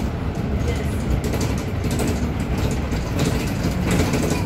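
City bus driving, heard from inside the passenger cabin: steady engine and road rumble of the moving bus.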